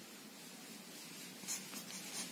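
Faint scratching of a ballpoint pen writing on paper, with a couple of short strokes standing out about one and a half seconds in.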